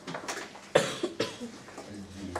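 A person coughing: a few short coughs, the loudest about three-quarters of a second in.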